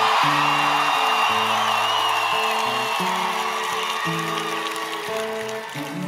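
Fingerpicked acoustic guitar playing a repeating intro riff in a live recording, with an audience cheering and applauding over it. The crowd noise is loudest at the start and fades away, and a long high whistle sounds over it in the first half.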